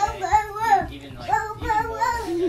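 A young child's high, sing-song voice, several rising and falling phrases in a row.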